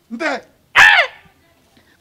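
A man's voice: two short exclamations, the second louder and falling in pitch, followed by a pause of about a second.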